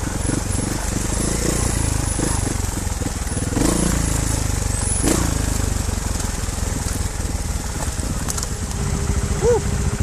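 Trials motorcycle engine running at low revs over a rough forest trail, heard from the bike itself, with the bike rattling and knocking over bumps; two louder knocks come about three and a half and five seconds in.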